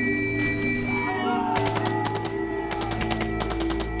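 An officer's whistle blowing one long, steady blast, the signal to go over the top, which stops about a second in. About a second and a half in, rapid machine-gun fire starts, over a music score with sustained low notes.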